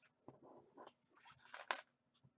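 Faint rustling and light clicks of a plastic-sleeved exercise card and counting tokens being handled on a wooden table, with one sharper click near the end.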